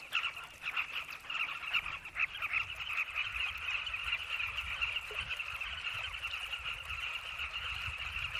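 A colony of carmine bee-eaters calling: a dense, unbroken chorus of many short, overlapping calls from many birds at once.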